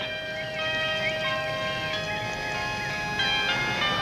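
Background music of long held notes, with new notes coming in every second or so and a higher wavering melody above them.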